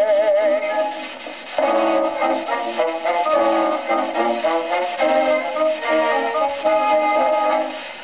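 Acoustic-era 78 rpm gramophone record of a music hall song playing: a baritone holds his last note with a wide vibrato, ending about a second in, then the instrumental accompaniment plays the closing bars. The sound has no bass and no top.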